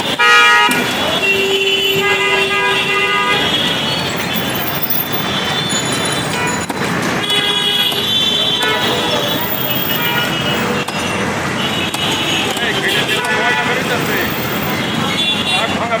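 Busy roadside market ambience: vehicle horns honking several times, each toot held about a second, over continuous traffic noise and people talking.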